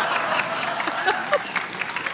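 Studio audience applauding, a dense patter of clapping that thins out toward the end.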